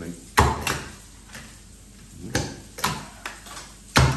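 Hand-held plectrum punch cutting picks out of a sheet of plastic packaging: sharp clacks as it closes, two close together about half a second in, two more a little past the middle, and another at the end.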